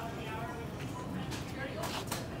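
Indistinct talking over the steady background noise of a grocery store, with a couple of sharp clicks near the end.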